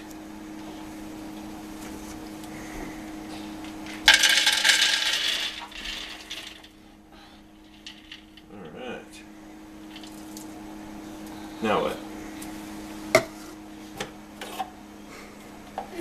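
Shelled peanuts poured from a plastic jar into a food processor's plastic bowl: a loud clatter of many small impacts lasting about two seconds, starting about four seconds in and tailing off.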